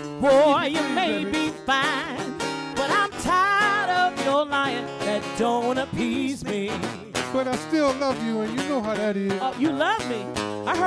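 Live blues trio: a woman singing long, wavering notes with wide vibrato over acoustic guitar and hand-played conga drums.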